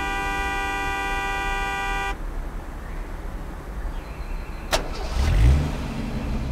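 The song's final held chord cuts off abruptly about two seconds in, leaving a low outdoor rumble. Near the end a sharp click is followed by a car engine starting with a rising note, the loudest moment.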